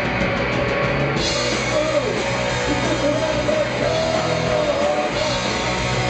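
Live punk rock band playing, with electric guitars, bass and drums under a shouted lead vocal.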